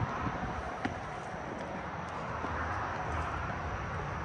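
Steady outdoor background noise with a low rumble that rises and falls, and a faint click about a second in.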